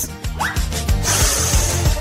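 A strip of tape bubble gum pulled out of its round plastic case, a rasping, zipper-like noise lasting about the last second, over background music with a steady beat.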